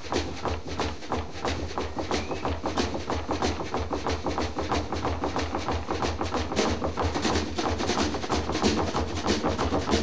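Snare drum played in a fast, unbroken run of sharp strokes: free-improvised solo jazz drumming.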